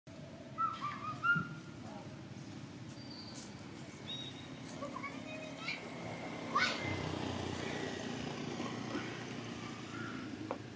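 Short, high chirping calls of small animals over a steady low outdoor background: a wavering cluster about half a second in, then scattered whistled notes and a quick rising chirp a little past the middle.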